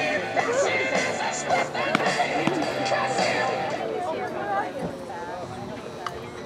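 Several players and spectators calling out at a baseball game, the voices overlapping, with one sharp knock about two seconds in. The voices fade toward the end.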